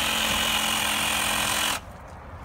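Handheld electric drill running at a steady speed as it cuts into the top of a pumpkin, then stopping abruptly near the end.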